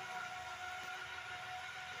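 Faint steady background hum and hiss with a thin, steady whine, unchanging throughout; no distinct event.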